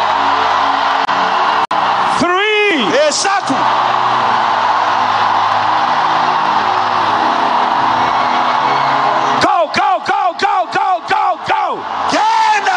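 A large congregation screaming together in one sustained roar of many voices, over steady keyboard music. A single man's amplified voice calls out over the crowd a couple of seconds in, then gives a quick run of about seven short shouts near the end.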